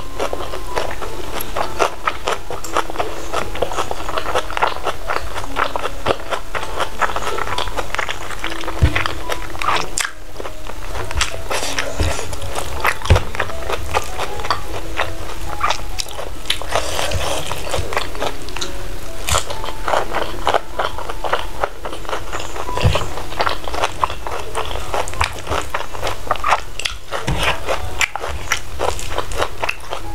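Close-up eating sounds of salted-egg fried chicken and rice eaten by hand: a steady run of chewing, crunching and small clicks. Soft background music plays under it throughout.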